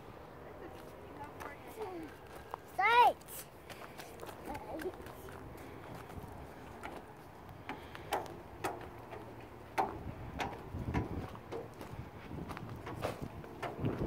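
A child's short high-pitched squeal about three seconds in, rising and falling in pitch, the loudest sound. Then scattered clicks and knocks of small footsteps on perforated metal playground stairs.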